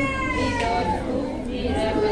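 A young child's high-pitched cry: one drawn-out wail that dips slightly in pitch, then a shorter, lower one near the end, over a murmur of voices in the room.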